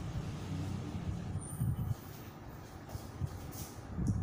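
A low background rumble, louder in the first two seconds, with faint strokes of a marker on a whiteboard near the end.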